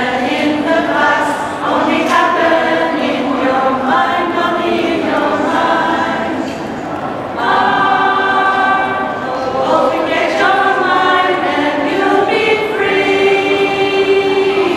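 Mixed choir singing a song, with long held notes. The singing drops briefly about halfway through, then comes back louder on a new phrase.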